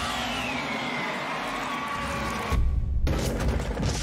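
Sound-effect battle audio: a steady hissing rush with a faint falling whine, cut by a sudden deep explosion boom about two and a half seconds in, likely over a soundtrack.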